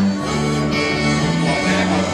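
Live country-style dance band playing an instrumental passage: guitars, drums and accordion, with sustained notes over a steady bass line.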